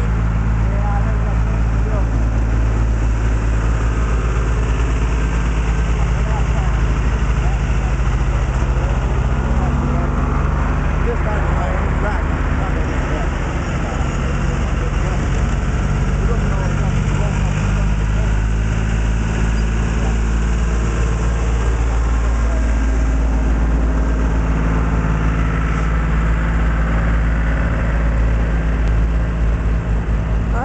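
John Deere 720 Diesel's two-cylinder engine idling steadily, with indistinct voices in the background.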